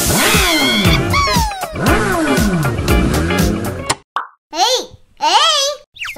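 Comic cartoon sound effects over lively background music: repeated sliding, falling tones for about four seconds. After a brief break, short wobbling, squeaky voice-like effects.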